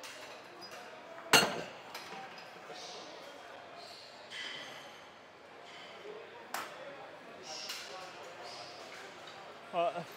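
A single loud metallic clank about a second in, with a short ringing tail: a gym machine's weight stack or arm coming down as a set is released. Fainter clinks and background voices of a busy gym run underneath, with another lighter knock later.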